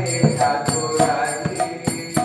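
Devotional chanting: a man's voice sings a mantra into a microphone, over hand cymbals struck in a steady beat about three times a second with a bright ringing.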